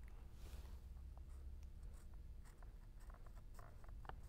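Faint scratching and light clicks as a set square is slid into place on chart paper and a felt-tip marker is drawn along it, over a low steady hum.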